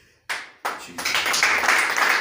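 Hands clapping: two separate claps, then loud, dense clapping from about a second in.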